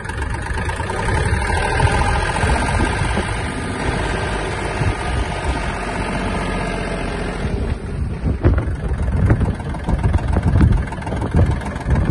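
Kubota L1-185 mini tractor's three-cylinder diesel engine running steadily as the tractor drives in top gear. About two-thirds of the way through, the sound turns rougher and more uneven, with more low rumble.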